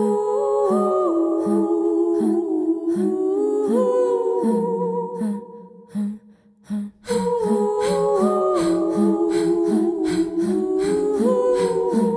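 Music: several layered wordless voices humming held notes in harmony, gliding between pitches, over a steady beat of low pulses and light high ticks. The music thins out and nearly drops away about five to six seconds in, then the same hummed phrase starts again about seven seconds in.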